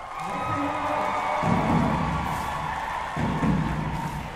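Marching band playing: the brass hold a sustained chord, with low brass notes coming in about a second and a half in and again a little after three seconds.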